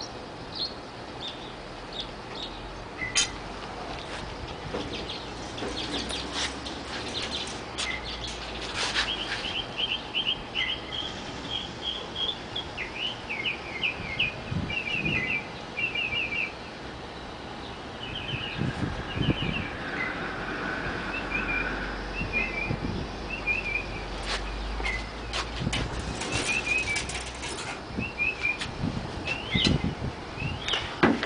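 Small birds chirping in quick, repeated runs of short notes throughout. Several sharp clicks and knocks come in between, a few around the first quarter and a cluster near the end.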